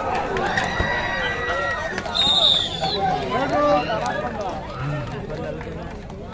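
Many voices of players and spectators shouting over one another as defenders tackle a raider in a kabaddi match, loudest in the first few seconds and dying down toward the end. A brief high tone sounds about two seconds in.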